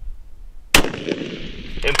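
A single precision rifle shot: one sharp crack about three quarters of a second in, followed by a long echo that rings out for about a second.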